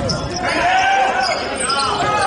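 Live basketball game sound in a gymnasium: a ball bouncing on the hardwood court amid voices calling out from players and the crowd.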